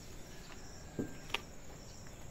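Faint steady high-pitched chirring of insects such as crickets. A soft knock comes about a second in, followed shortly by a brief sharp click.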